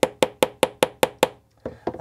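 A light metal hammer tapping a snap-setting tool against a brass snap fastener on a small steel anvil: quick, even, light taps, about five a second, stopping a little over a second in. The taps are mushrooming the snap's post tube over to set the fastener in the leather.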